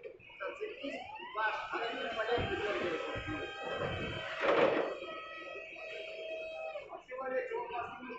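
Electric forklift hydraulic lift motors whining steadily as they raise a load, the whine rising in pitch at the start. One loud knock about halfway through.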